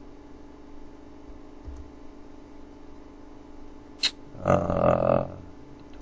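Low, steady hum of room tone with a single sharp click about four seconds in, then a short voiced sound lasting about a second.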